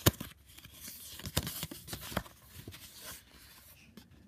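Folded paper card being opened and handled: a sharp snap at the start, then rustling with a few light crackles.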